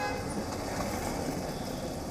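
Street traffic ambience picked up by an outdoor microphone: a steady noise of passing vehicles.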